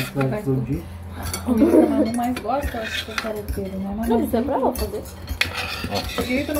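A metal fork clinks and scrapes on a glass plate as someone eats. Voices talk in the background, loudest about two seconds in and again around four and a half seconds.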